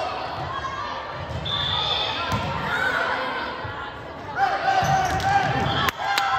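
Volleyball rally in a large echoing gym: the ball being struck with sharp hits, mixed with players' and spectators' voices.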